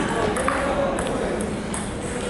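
Table tennis ball clicking off the paddles and table in a rally: several sharp clicks less than a second apart, with voices in the background.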